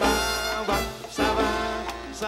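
Live salsa band playing an instrumental passage led by its horn section, trumpets and trombones, over bass and percussion. A loud horn phrase opens the passage and another follows about a second later.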